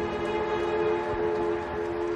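Background music: a soft sustained chord held steady.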